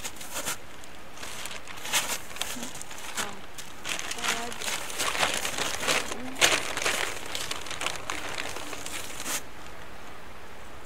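Plastic bag of potting soil crinkling and rustling as a hand reaches in and scoops out soil: a run of irregular crackles, loudest around the middle, that stops shortly before the end.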